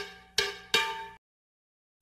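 A short intro jingle of struck, bell-like notes, three in quick succession about 0.4 s apart, each ringing briefly and fading.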